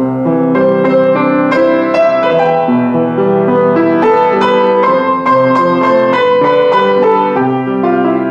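Diapason D-183BG grand piano being played: a continuous passage of chords and melody, the notes sustaining and ringing into one another. The piano is slightly out of tune.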